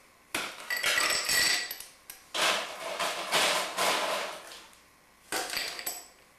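Ice cubes tipped from a scoop into the glass half of a cocktail shaker, clattering against the glass in about four separate pours with short pauses between them.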